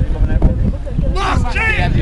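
Wind buffeting the microphone in a steady low rumble, with people shouting during play and one loud, high shout from a little after a second in until near the end.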